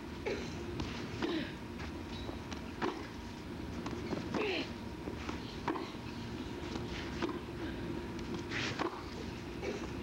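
Tennis balls struck back and forth by rackets in a baseline rally, a sharp pop about every second and a half, over a steady low crowd and broadcast background with a faint hum.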